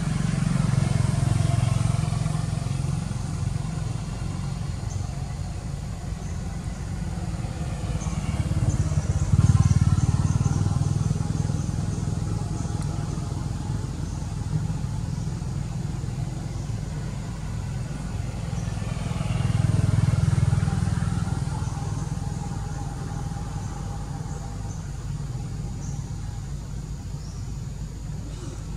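Engines of road vehicles passing by over a steady low rumble. Three passes swell and fade, about a second in, about nine seconds in and about twenty seconds in.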